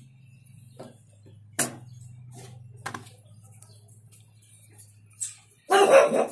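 Two folding cleaver knives being handled and closed: two sharp metallic clicks about a second apart, with lighter taps between, as the blades are folded shut. A loud, short vocal sound comes near the end.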